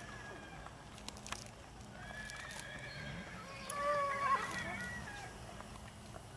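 Paso Fino stallion neighing, two calls with the louder one about four seconds in: a stallion calling to a nearby mare.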